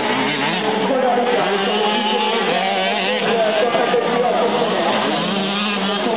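Several 85cc two-stroke motocross bikes revving and accelerating, their engine pitches rising and falling over one another.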